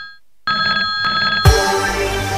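A telephone ringing: one ring fades out just after the start, and after a short pause a second ring lasts about a second. About a second and a half in, electronic music starts with a loud bass hit.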